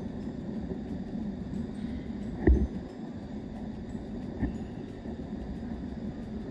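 Steady low rumble of indoor background noise, with one sharp thump about two and a half seconds in and a lighter one about two seconds later.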